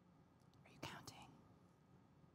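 Near silence: room tone, broken about a second in by a brief, faint whisper lasting about half a second.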